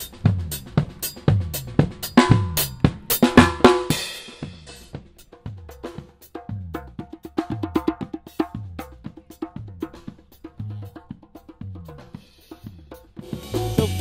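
Drum kit solo: loud snare and bass drum hits with cymbal crashes for the first few seconds, then a softer, steady beat. About a second before the end, other band instruments join in.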